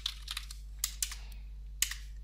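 Computer keyboard typing: about five separate key clicks spread over two seconds, typing a short folder name.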